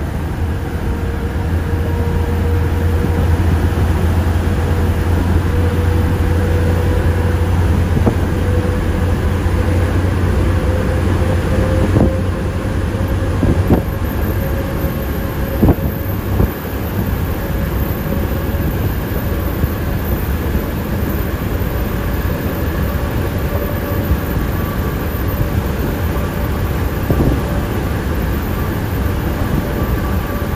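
Heavy truck's diesel engine and drivetrain droning inside the cab while under way, with a faint whine that rises slowly as speed builds. A few short knocks are heard around the middle.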